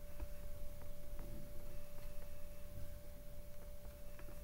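A steady, unwavering single tone of middling pitch over a low rumble, with a few faint clicks.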